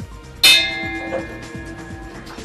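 A small bell struck once, about half a second in, ringing out with several clear tones that slowly fade. It is the bell rung to adjourn the forum.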